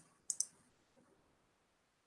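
Computer mouse clicks: one at the start, then two in quick succession about a third of a second in, and a faint tick about a second in.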